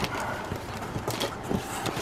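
Plastic bubble-wrap packing and cardboard box flaps crinkling and rustling as hands dig into a packed shipping box, with uneven light clicks and taps.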